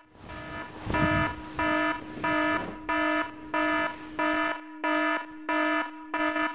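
Samsung smartphone alarm ringing: a pitched beep repeating about one and a half times a second, growing louder. There is a burst of rustling noise about a second in.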